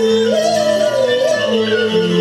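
A woman singing a Cantonese opera song over instrumental accompaniment: one long, ornamented note that rises and then falls back.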